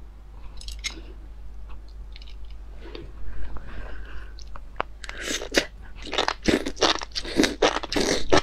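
Biting and chewing of chili-oil enoki mushrooms, picked up close by a clip-on microphone. There are faint clicks for the first few seconds, then a run of irregular wet crunching bites from about five seconds in.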